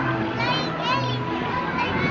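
Crowd chatter with children's voices, including two short high-pitched calls about half a second and one second in, with music underneath.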